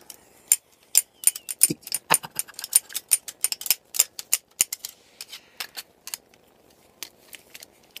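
Metal claw-glove blades tapping on a glass swing-top jar: a quick run of sharp clicks that thins out to a few scattered taps after about five seconds.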